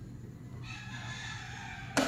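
A rooster crowing, one long drawn-out call beginning about half a second in. A sharp knock comes near the end.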